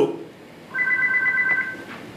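Electronic telephone ring: one steady, flat beep-like tone about a second long, starting a little under a second in.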